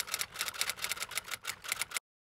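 Stylus tip tapping and scratching on an iPad's glass screen while hand-lettering, a quick run of sharp ticks, several a second. It cuts off abruptly at the end.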